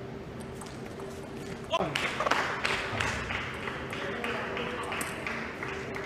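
Table tennis rally: a few light ball hits, then about two seconds in a loud shout from a player that falls sharply in pitch as the point ends. Clapping follows at about three claps a second, echoing in a large hall and slowly fading.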